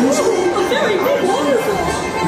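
Voices talking, with the ride's music playing quietly behind them.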